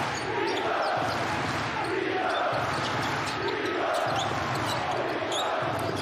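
Basketball game sound in an arena: the ball dribbled on the hardwood court and sneakers squeaking in short, high chirps, over a steady murmur of crowd voices.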